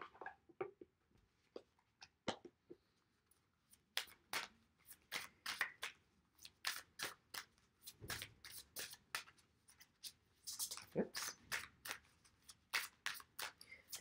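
A deck of oracle cards being shuffled by hand: a run of quick, sharp card flicks and slaps, sparse at first and then coming thick and fast from about four seconds in.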